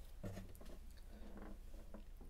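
Faint handling noise of an acoustic guitar being lifted and turned over in the hands: soft rubbing and knocks on the wooden body, slightly stronger at the start.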